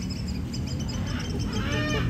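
Captive birds calling, with arching calls that grow stronger near the end.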